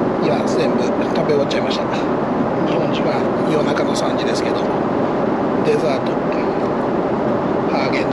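Steady in-flight cabin noise of a Boeing 777-300ER airliner, an even rush of engines and airflow, with faint voices underneath.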